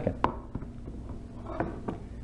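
A sharp click about a quarter second in, then a few faint knocks near the end: a plate being handled on a kitchen counter.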